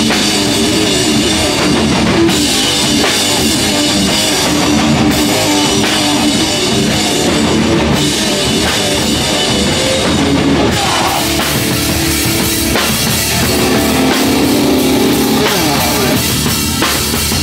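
Live hardcore punk band playing loudly: distorted electric guitars, bass guitar and a pounding drum kit.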